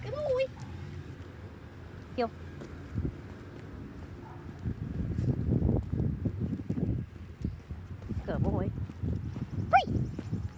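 Footsteps of a person and a dog walking together on pavement, an irregular run of low steps, heaviest from about halfway in. A few short high chirps come through near the start, about two seconds in, and near the end.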